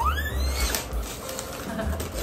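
Gift wrapping paper rustling and crinkling as a present is unwrapped, after a short rising squeal at the very start.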